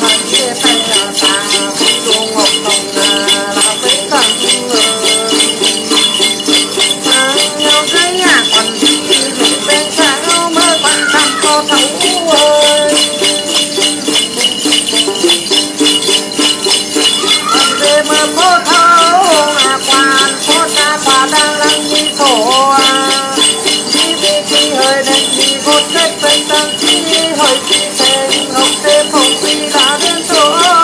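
Tày-Nùng Then ritual singing: a man's voice chanting a melodic line, accompanied by the plucked đàn tính lute and a cluster of small bells (chùm xóc nhạc) shaken in a steady rhythm throughout.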